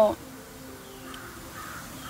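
A few faint, harsh bird calls, each short, sounding in a lull in the foreground.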